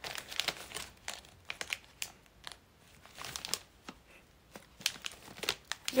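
Plastic snack packaging crinkling as it is handled, in several short spells of rustling.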